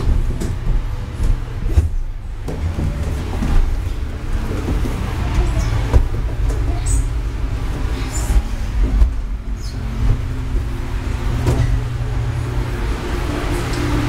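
Hands, knees and feet knocking and sliding on a hollow plastic crawl tube, with a steady low rumble of handling on the microphone and irregular thumps throughout.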